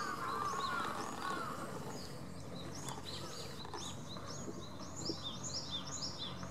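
Small birds calling outdoors: a warbling call for the first second or so, then a quickening run of short, high, falling chirps from about halfway through, over a steady background hum.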